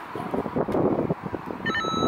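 Door intercom starting its electronic calling tone a little over a second and a half in, just after its call button is pressed: a steady tone with a repeating beep pattern over it.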